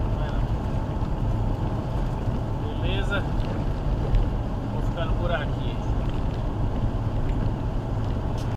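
Steady low rumble of a car driving on the highway, heard from inside the cabin, with brief snatches of a voice about three and five seconds in.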